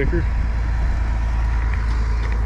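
A tractor engine idling with a steady, even low hum.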